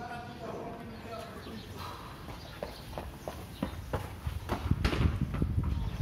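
Short voices at first, then scattered taps and footsteps on a tiled floor. About four seconds in, the footsteps get louder and come with low thuds, as of a phone being carried along at walking pace.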